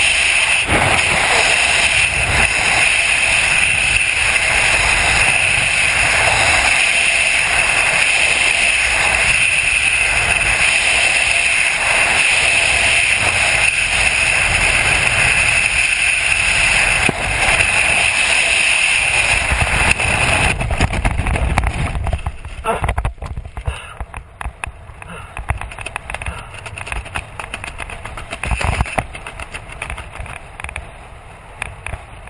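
Freefall airflow rushing over the camera microphone, loud and steady. About twenty seconds in it falls away sharply as the parachute opens, leaving quieter, uneven flapping and buffeting of wind under the canopy.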